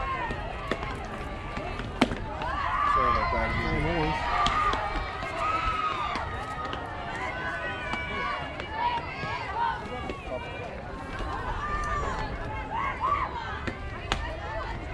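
Softball players' high-pitched voices calling and chattering across the field, with one sharp click about two seconds in.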